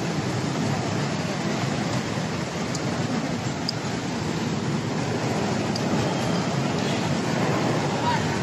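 A wooden street vendor's pushcart rolling on small wheels over an asphalt road, rattling steadily as it is pushed along.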